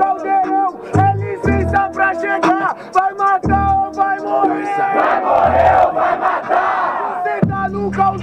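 A hip-hop beat with a looping melodic sample and heavy kick drum plays loudly while a crowd shouts over it. The crowd noise swells about five seconds in and dies down around the seventh second.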